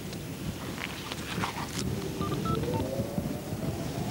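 A mobile phone's short electronic beeps: three brief tones, the last one lower, a little after a few light clicks, over a steady low background noise.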